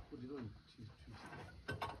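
A short murmured voice, then a few sharp crackling clicks near the end.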